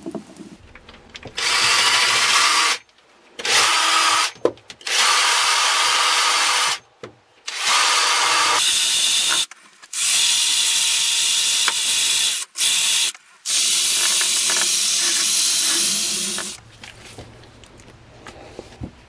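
Cordless drill spinning a wheel attachment against the steel blade of a billhook to clean it. It runs in about seven bursts of one to three seconds each, with short stops between them.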